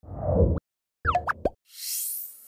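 Animated-logo sound effect for a news outro. A short low swell ends in a quick rising blip. About a second in comes a cluster of quick rising plinks, and near the end a high, sparkling shimmer starts.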